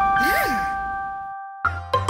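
Cartoon bell-like 'ding' sound effect struck once and ringing out, fading over about a second and a half, with a short rising-then-falling glide over it. Marimba-like music starts near the end.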